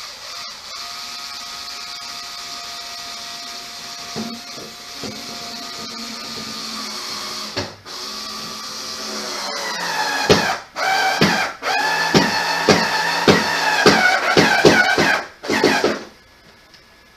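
Power drill driving screws. The motor runs steadily at first, then speeds up and gets louder about nine seconds in, and is run in a series of short stop-start bursts toward the end.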